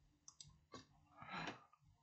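Near silence with a few faint clicks and a brief soft rustle about one and a half seconds in, small handling noise from a component being picked up.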